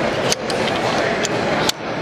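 Sharp metallic clicks of a Slide Fire belt-fed AR-type rifle (a modified Colt 6920) and its belt-feed module being handled. Two clicks stand out, one about a third of a second in and one near the end, with a couple of fainter ones between, over steady crowd babble.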